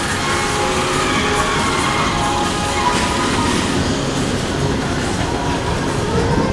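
PeopleMover ride train running steadily along its track, with music playing over the rolling noise.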